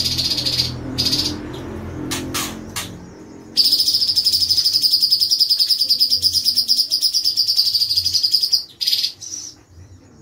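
Cucak cungkok (leafbird) singing. A few sharp short notes come first, then, from about three and a half seconds in, a long, very fast, buzzing rolling trill held for about five seconds. A few short notes close the song.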